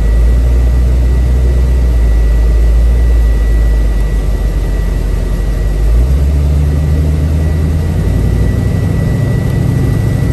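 1967 Chevrolet Camaro's 350 V8 with dual exhaust, heard from inside the cabin: a deep steady idle rumble while stopped. About six seconds in, the car pulls away and the engine note rises and holds higher.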